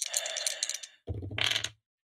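Dice clattering as they are rolled, a dense rattle of small hard knocks through the first second, followed by a brief voice.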